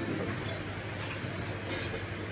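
Quiet, steady low rumble and hum with a brief high hiss near the end.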